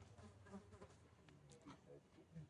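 Near silence with the faint buzzing of a flying insect.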